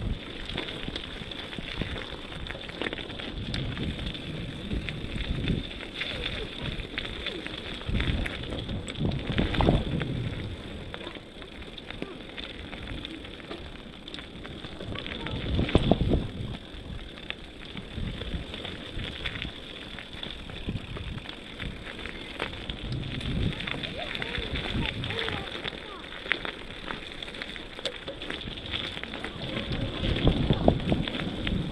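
Bicycle rolling fast over a rough, leaf-covered dirt trail: tyres crunching on grit and the bike rattling. Wind buffets the microphone in gusts about ten and sixteen seconds in.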